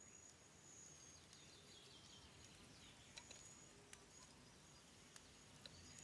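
Near silence: faint forest ambience with a few brief, faint high-pitched chirps.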